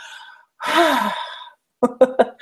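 A woman's single breathy, laughing exhalation, about a second long, starting about half a second in.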